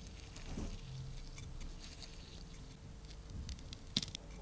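Rosin flux crackling and sizzling under a hot soldering iron as a stripped copper wire end is tinned in a tray of rosin and solder, with a sharp click near the end.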